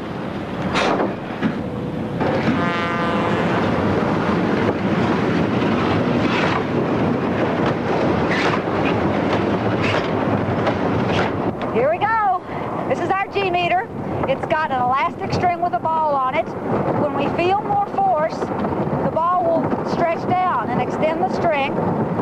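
Roller coaster train rolling out and clattering along the track toward the first hill, a steady rattling rumble with a few sharp knocks and a brief rapid clicking a few seconds in. From about halfway, riders' voices are heard over the ride noise.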